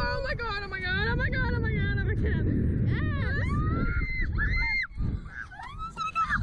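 Two girls wailing and squealing on a fast-moving thrill ride: a long wavering wail that falls in pitch, then short high squeals about halfway through. Heavy wind rush on the microphone runs underneath.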